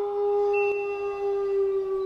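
A singing bowl ringing: one long, steady tone with a few higher overtones, slowly fading.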